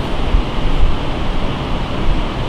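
Steady rushing background noise with a strong low rumble, as loud as the speech around it.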